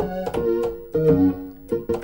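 Apple II-based alphaSyntauri digital synthesizer played from its keyboard: a short run of notes and small chords, each with a sharp plucked attack that then fades. Each key sounds two voices at once, a percussion waveform and a primary waveform.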